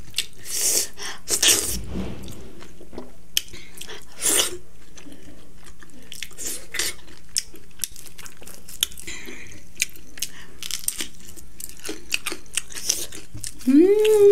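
Close-up chewing and wet mouth smacks of someone eating with their hand, with irregular sharp clicks, louder about a second in and again around four seconds.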